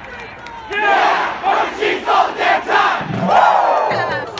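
A crowd of marching band members shouting a rhythmic chant together, with short shouts about three a second, building to one longer group shout near the end.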